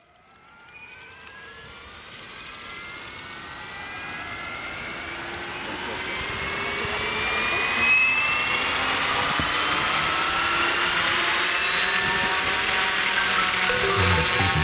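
An engine-like whine swells in from silence and climbs steadily in pitch for about eight seconds, then holds loud and steady.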